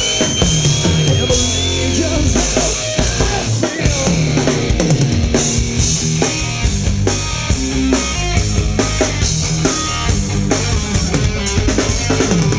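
Live rock band playing loudly: drum kit with kick and snare, electric guitar and electric bass.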